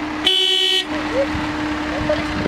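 A car horn honks once, a single steady note lasting about half a second, starting a quarter-second in. It comes from a Suzuki Ciaz sedan as it rolls up.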